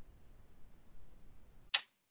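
Faint room noise, then a single sharp, short click near the end, after which the sound cuts out to dead silence.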